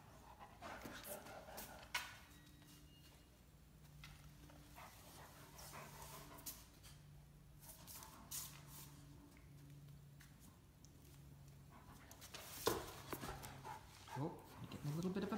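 Great Danes playing, an adult and a young puppy, heard quietly: sharp clicks and scuffs of paws and claws on a tile floor, a low grumble repeated about once a second, and a burst of scrabbling near the end.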